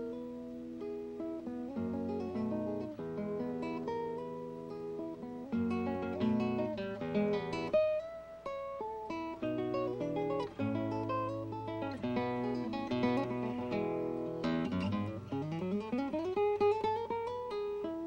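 Classical guitar played fingerstyle: a continuous flow of plucked single notes and chords, with a long rising glide in pitch near the end.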